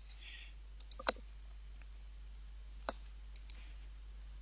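Computer mouse button clicks: three quick clicks about a second in, then three more from about three seconds in, over a faint steady low hum.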